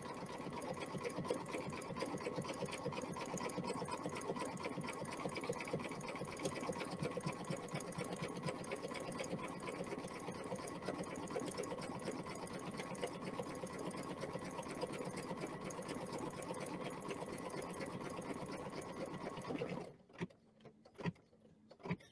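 Computerized embroidery machine stitching out a design, a steady run of rapid needle strokes with a constant hum. It stops about two seconds before the end, when the first section of the design is complete, leaving only a few faint clicks.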